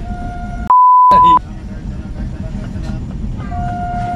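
A loud, steady high beep lasting about two-thirds of a second, about a second in, with the other sound cut out beneath it: an edited-in bleep. Under it runs the steady rumble of a passenger train carriage in motion.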